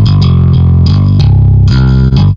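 Shreddage 2 Bass virtual bass guitar in Kontakt, soloed, playing a loud, low, distorted riff of several picked notes through the Grind Machine amp sim's Bass Master preset.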